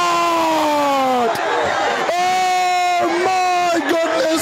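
A man's voice calling out over the loudspeaker in long drawn-out notes: one held call sliding down in pitch through the first second or so, then two shorter held calls. Crowd noise runs underneath.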